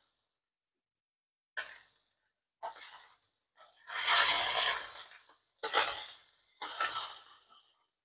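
Salmon fillets sizzling in hot oil in a frying pan as they are turned with metal tongs. The sizzling comes in short bursts, with the longest and loudest about four seconds in, when a fillet is laid back into the oil.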